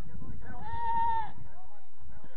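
A person's drawn-out shouted call, held on one pitch for just under a second, starting about half a second in, over a steady low background rumble.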